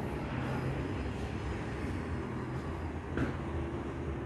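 A steady low mechanical rumble with a faint hum, like a vehicle engine running. There is a short knock about three seconds in.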